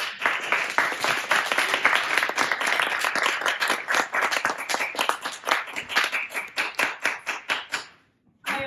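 Audience applause: many people clapping at once in a dense, steady patter.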